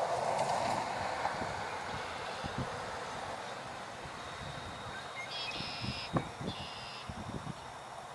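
Steady hum of distant road traffic that slowly fades, with two short high-pitched bird calls and a sharp knock a little past the middle.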